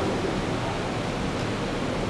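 Steady, even hiss of background room noise, with no distinct events.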